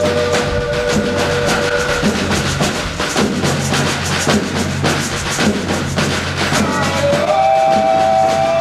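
Boi de mamão folk band playing live, large hand-carried bass drums and other percussion keeping a steady beat. A held two-note chord sounds over the drums and stops about two seconds in; another starts, a little higher, near the end.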